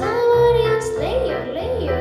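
A girl singing solo into a microphone over instrumental accompaniment. She holds one long note for about the first second, then moves through several shorter notes.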